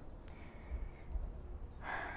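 A quiet pause with a faint low rumble, then a woman's short breath drawn in near the end.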